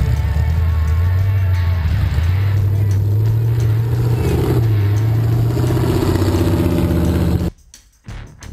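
Off-road truck engine running under load through mud, its pitch rising and falling as the throttle changes, with music playing over it. The sound cuts off abruptly near the end.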